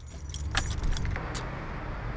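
Keys jangling with a run of sharp metallic clicks in the first second and a half, over a steady low rumble.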